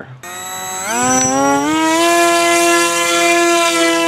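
Electric motor and pusher propeller of an AirModel Sword EPP flying wing spinning up, a whine that rises in pitch over about two seconds and then holds steady as the wing is hand-launched.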